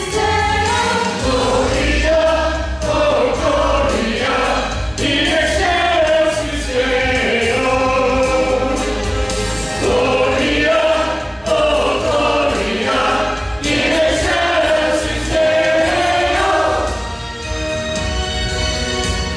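Church choir singing a Christmas cantata in parts, with an instrumental accompaniment carrying a steady bass beneath the voices; the sung phrases swell and break, easing off briefly near the end.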